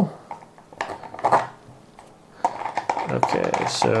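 A few light clicks and some scraping from handling a cat scratching post's sisal-wrapped section on its threaded bolt as it is turned and lifted off. A man's voice comes in near the end.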